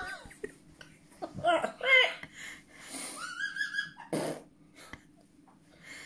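A person laughing in short, wheezy, breathy bursts. There is a high squeal of a laugh near the middle and a quick burst of breath about four seconds in.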